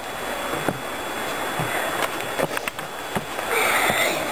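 Steady rushing of lake water at the shore, with a few light knocks.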